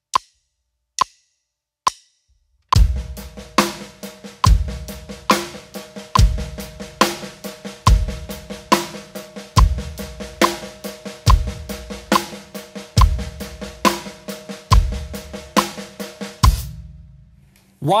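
A metronome click at 70 beats per minute counts in, then a drum kit plays a steady groove: sixteenth notes on the snare, led by the weak left hand, with quiet ghost notes and accented backbeats on two and four, eighth notes on the hi-hat, and bass drum on one and three. The groove stops about a second and a half before the end.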